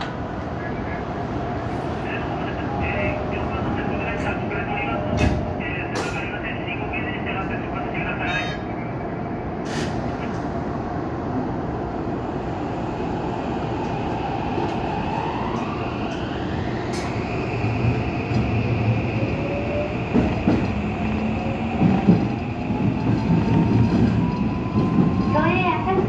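Toei 5500-series subway train starting away from a station: the whine of its motors climbs in pitch as it accelerates, steeply for a few seconds and then more slowly, while the running noise grows louder toward the end. Before it moves, a few sharp knocks stand out over the hum of the stopped train.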